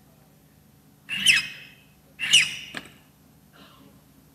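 Two strokes of a file across a key blank while impressioning a key, each a short screech that falls in pitch; the second ends with a click.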